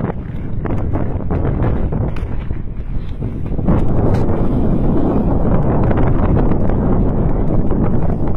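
Wind buffeting the microphone, a dense low rumble that grows louder about four seconds in.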